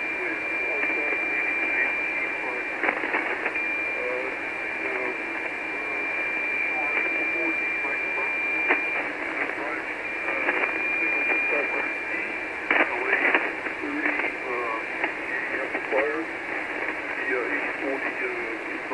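Amateur HF transceiver receiving 40-metre lower-sideband voice through its speaker: hissy band noise with weak, hard-to-follow speech. A steady high-pitched heterodyne whistle sits over the signal for most of the first half and again briefly later. A few sharp static crashes break in, two close together past the middle.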